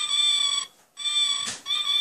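The tiny sound chip in a light-up Halloween owl keychain playing an electronic sound effect: a high-pitched synthetic tone in three short notes, each under a second long, with a gap after the first.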